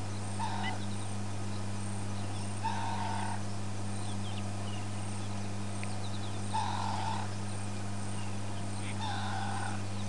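An animal call, each about half a second long, repeated four times roughly three seconds apart. Faint thin chirps sound among the calls, over a steady low hum.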